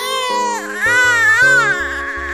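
A baby crying in a series of high wails, over background film music with sustained notes and a low bass line.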